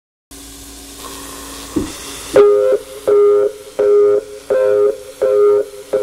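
Opening of a lo-fi electronic track played on a Yamaha RY10 drum machine and a Yamaha VSS-30 PortaSound keyboard. It starts with about two seconds of hiss and a faint low tone, then a soft thud. After that a short two-note synth chord repeats evenly, about every 0.7 seconds.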